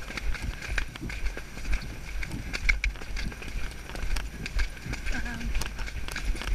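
A pony's hoofbeats on a wet, muddy dirt track, a run of sharp, irregular clicks and thuds, over a low rumble of wind on the microphone.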